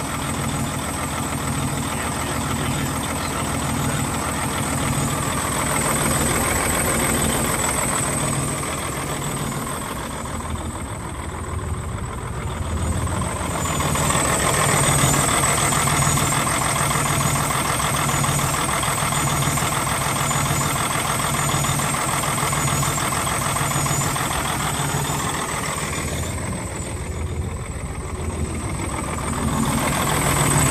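Paccar MX13 inline-six turbo-diesel truck engine idling steadily, heard close up from the open engine bay. Its level dips and swells briefly twice.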